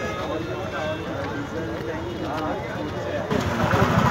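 Bystanders' voices talking over outdoor road noise, with a louder rush of noise near the end.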